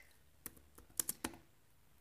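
A few keystrokes on a laptop keyboard typing a search, most of them bunched about a second in.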